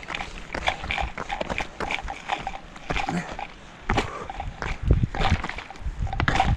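Rapid footsteps down a loose rocky trail, shoes crunching and scuffing on stones and gravel in quick irregular steps, with hard breathing from the runner.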